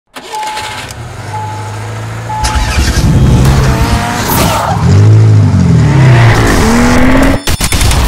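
Intro sound effects: three short electronic beeps, then a car engine revving, its pitch sweeping up and down, with tire squeal. A few sharp clicks come near the end.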